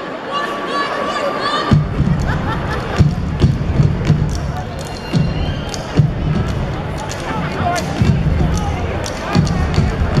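Step team stomping hard on a wooden stage floor in a unison step routine, heavy thuds starting a little under two seconds in and repeating in a rhythm, with voices from the stage and crowd. Before the stomping begins, a drawn-out call is held.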